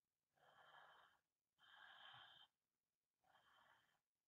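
A woman breathing audibly: three faint breaths, each under a second long, with short pauses between them.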